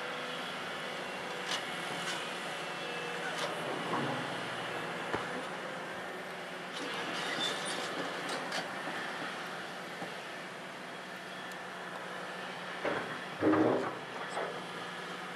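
Volvo EC700B LC crawler excavator working: its diesel engine runs steadily under hydraulic load as the boom raises and swings, with scattered metallic clanks and squeals. Near the end the loudest moment comes, a short grinding burst as the bucket digs into the broken limestone.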